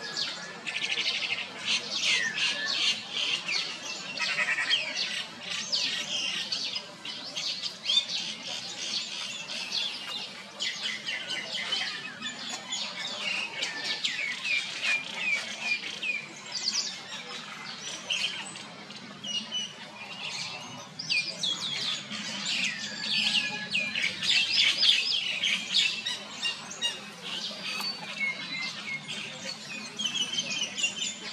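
A dense chorus of birds chirping and squawking in the trees: many short, high-pitched calls overlapping without a break, busiest near the start and again late on.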